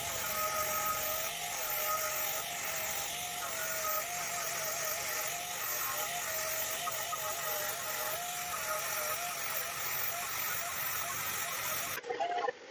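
Angle grinder running with a polishing disc pressed against a stainless steel plate, buffing it. A steady motor whine whose pitch wavers up and down over a hiss of the disc on the metal.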